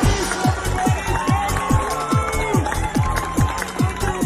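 1990s Russian euro dance track with a driving beat and a repeated synth note that drops sharply in pitch about four times a second.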